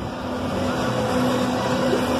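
Steady rushing noise on a spinning amusement park ride: wind buffeting the phone's microphone, with a faint steady hum underneath.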